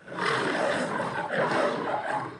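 Lion growling: one long growl of about two seconds that starts suddenly after a brief silence.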